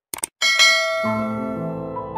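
Two quick mouse-click sound effects, then a bright notification-bell chime that rings on and fades. Music comes in about a second in.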